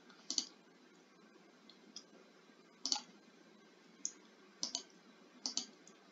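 Faint computer mouse clicks, about seven of them spaced irregularly, placing the points of a line in a drawing program.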